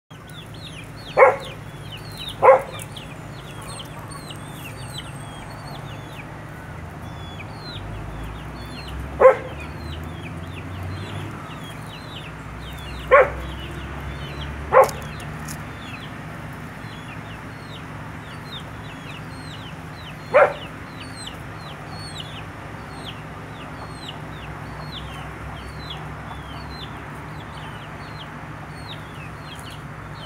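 Chickens clucking: six short, loud single clucks spread across the stretch, over a constant scatter of quick high chirps from small birds.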